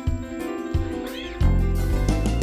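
Live band playing an instrumental passage on keyboard and acoustic guitar. About a second in, a short high note bends up and back down, and a deep bass comes in loudly about one and a half seconds in.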